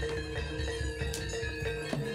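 Live jaranan ensemble music: held ringing tones under sharp percussion strokes.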